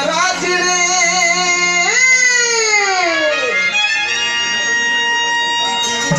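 Live Gondi folk song: a man singing through a microphone over electronic keyboard accompaniment. About two seconds in, a long note slides up and then falls slowly away, and the last two seconds hold a steady sustained keyboard chord.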